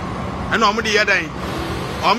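A person speaking briefly over a steady background hum of street traffic.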